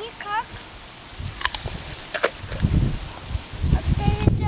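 A voice briefly at the start, then a few sharp clicks and an irregular low rumble through the second half.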